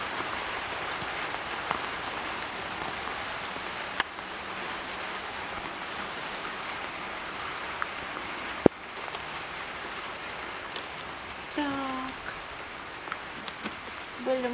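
Light rain falling steadily, with two sharp clicks, the louder one about nine seconds in.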